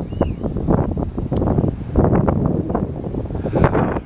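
Wind buffeting the camera's microphone in uneven gusts.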